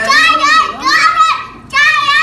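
A child's loud, very high-pitched voice, vocalizing without clear words in about three runs, with a short break about one and a half seconds in.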